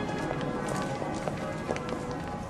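Footsteps of several people and scattered small clicks and taps, with faint background music dying away underneath.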